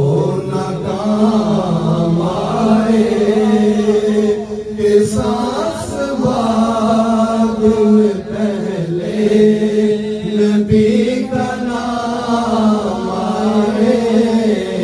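Men's voices chanting a naat through microphones, without instruments: a steady held note lies underneath while a melody line bends up and down above it.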